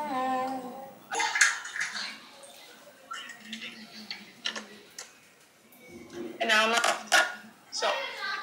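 A woman's muffled, wordless hum and giggle, then light clicks and taps, with another short hummed vocal sound near the end.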